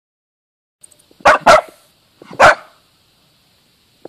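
Dachshund giving three short barks, two in quick succession and a third about a second later, at a mole it has dug out in its burrow.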